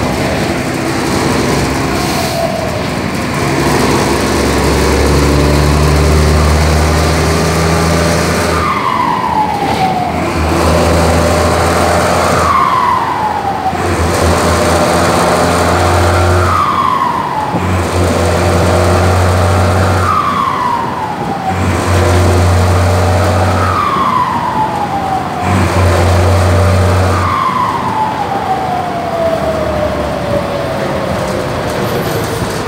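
Mercedes-Benz 1721 bus's turbo-diesel engine fitted with a whistle insert ('pente') in its KKK K27 turbocharger, heard from inside the moving bus. The engine drones under load, and from about nine seconds in, six times over, each time the load drops the turbo's loud whistle slides down in pitch.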